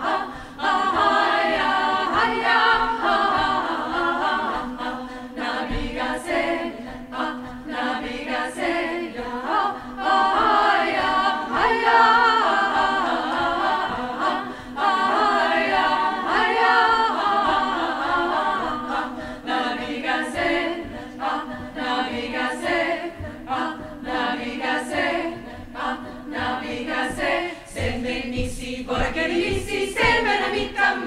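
Women's choir singing a cappella, with one low note held steady under moving upper voices.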